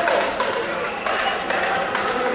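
Indistinct crowd chatter and voices, with three sharp knocks about half a second, one second and a second and a half in.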